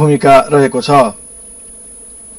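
A man narrating for about the first second, then a steady low buzz once the voice stops.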